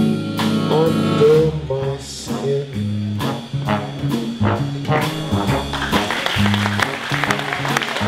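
Big band playing an instrumental swing passage, with brass and saxophone sections over stepping bass notes and a steady drum beat.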